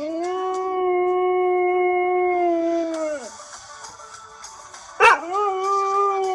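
Chocolate Labrador retriever howling along to a song: one long, steady howl of about three seconds that sags in pitch as it dies away. About five seconds in, a sharp short sound leads straight into a second howl.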